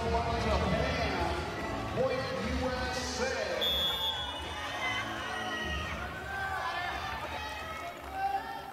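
Indoor arena ambience during a break in play: music over the public address with a pulsing low beat, mixed with crowd voices and players shouting.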